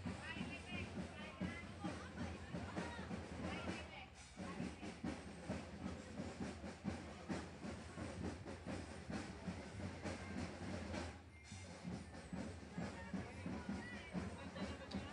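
Busy street-parade sound: crowd voices mixed with music and a steady run of percussive strokes, dipping briefly about four seconds in and again near eleven seconds.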